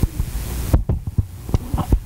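A low steady hum with a few short, soft knocks and clicks, and a faint hiss that drops out about three-quarters of a second in.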